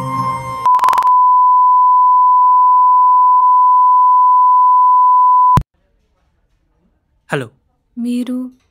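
A steady, high electronic beep at a single pitch, held for about four and a half seconds and cut off with a click.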